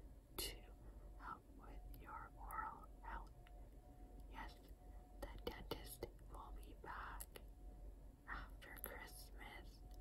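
A woman whispering close to the microphone in short, breathy phrases, with a few small clicks between them.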